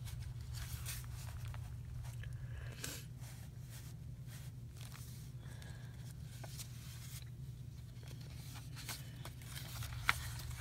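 Paper and card rustling and crinkling, with scattered light clicks and taps, as journal pages and paper embellishments are handled and pressed down, over a steady low hum.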